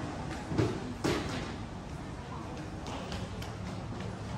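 Indistinct voices of people nearby, louder around the first second, over a steady low background hum in a terminal building.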